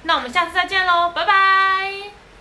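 A young woman's voice in a high, sing-song lilt: a few quick syllables, then one long held note from a little past the middle.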